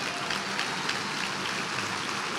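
Congregation applauding: steady, dense clapping from many hands.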